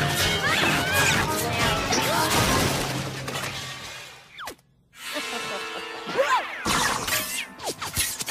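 Cartoon soundtrack: busy music with crashing, shattering and clattering sound effects of pots being knocked over. About four and a half seconds in it fades to a brief near-silence, then music and sliding cartoon sound effects come back.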